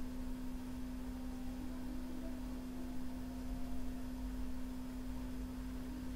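A steady, single-pitched background hum with faint hiss, unchanging throughout.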